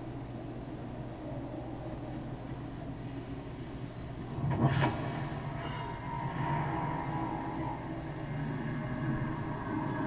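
Film soundtrack playing from a Toshiba television: a steady low rumbling drone, a sudden loud hit about four and a half seconds in, then a held mid-pitched tone for a couple of seconds.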